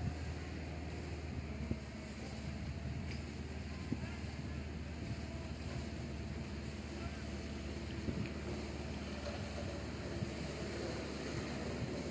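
Steady low rumble under an even outdoor background noise, with a few short clicks.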